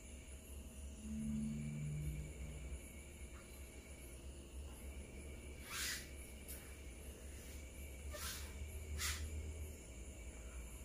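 Quiet room with a steady low hum, broken by a few brief soft swishes as the masseur's hands rub over bare skin during a back and leg massage, three of them in the second half.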